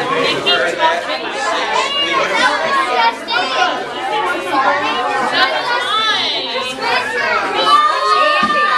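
A group of young children talking and calling out over one another, many high voices overlapping without a pause.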